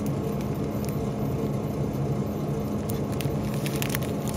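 Steady low hum, typical of a refrigerated display case, with a few brief crinkles and clicks of a plastic-wrapped bread package being handled.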